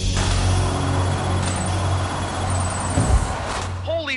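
Cartoon sound effect of a barred cell door sliding open after a keycard swipe: a steady mechanical rush over a low hum, with a thud about three seconds in, cutting off just before the end.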